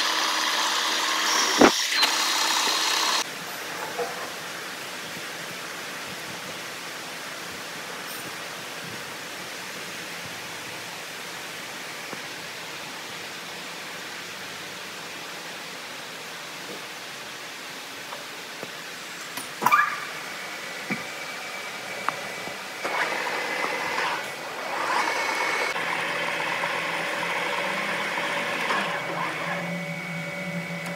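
Metal lathe running with a boring bar cutting inside a spinning steel bore, with a sharp click, until the noise drops about three seconds in. A long quieter stretch of steady machine noise with a couple of clicks follows, then the lathe runs again with a steady whine over the last few seconds.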